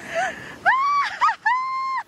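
High-pitched yelping cries of a person stepping into freezing cold river water. A rising cry comes about two-thirds of a second in, then a long cry is held on one pitch near the end.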